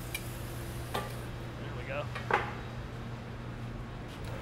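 Steady low hum of glass-studio equipment, with a few light clicks and taps of metal hand tools against the blowpipe and hot glass at the glassblower's bench.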